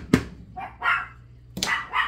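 Small dogs, chihuahuas, barking: two short barks about a second apart. It is alert barking that the owner takes as a sign that the mail has just been delivered.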